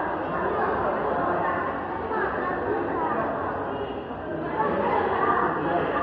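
Background chatter of many overlapping voices in an airport waiting room, no single voice clear.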